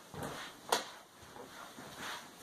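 Soft handling and movement noises with one sharp click about three-quarters of a second in.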